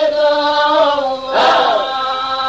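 Chanted singing: long held vocal notes, broken by a short sliding phrase about one and a half seconds in.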